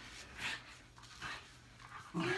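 A dog breathing in a few short, breathy puffs, faint and spaced roughly a second apart.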